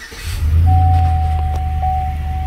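GMC Sierra pickup engine catching from a start and settling into a loud, steady idle, heard from inside the cab. A steady high-pitched tone comes in under it just under a second in.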